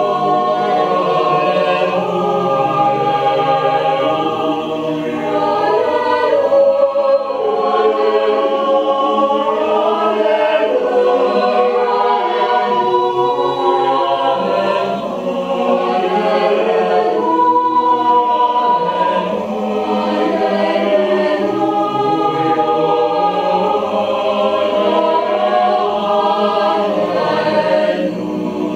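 Mixed choir singing a cappella in slow, held chords, with brief dips in loudness between phrases.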